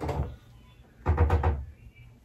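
Muffled handling knocks from a small velvet jewelry box being handled and set down on a table: a short soft thump at the start, then a quick cluster of several dull knocks about a second in.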